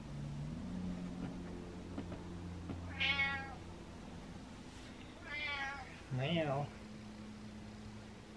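Domestic cat giving three short meows: one about three seconds in and two close together near the end, the last lower and wavering. These are the little attention-seeking meows he uses to ask for food.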